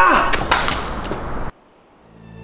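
A scuffle: a sharp hit at the start and a person's cry falling in pitch, then a few more quick knocks. The sound cuts off suddenly about one and a half seconds in.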